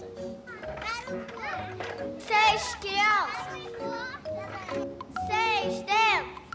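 Young children's high voices calling out several times over light background music with held notes.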